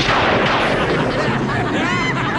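A sudden loud boom-like crash that dies away over the following second or so. It is a cartoon sound effect.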